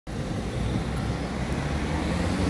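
Steady outdoor street noise: a low traffic rumble with an even hiss above it.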